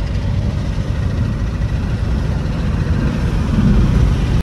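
Car driving along a road, heard from inside the cabin: a steady low rumble of engine and road noise, swelling a little near the end.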